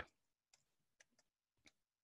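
About four faint, sparse computer keyboard keystrokes, irregularly spaced, in near silence.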